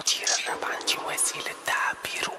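Quiet, stripped-down break in a rap track: whispered vocals with no bass or beat under them.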